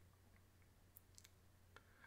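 Near silence: room tone with a low steady hum and four faint, short clicks, three of them close together about a second in and one more near the end.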